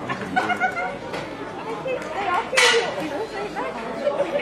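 Spectators chattering on a football terrace, several voices overlapping, with one short loud burst of sound about two and a half seconds in.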